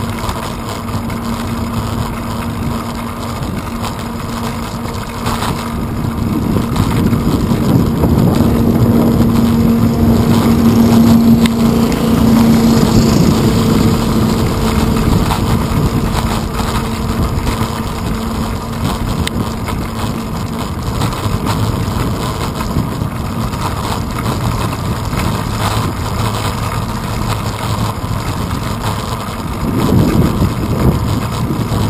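Wind and riding noise on a handlebar-mounted GoPro's microphone while cycling. Over it runs the steady hum of a passing engine, which grows to its loudest about ten to thirteen seconds in and then fades away.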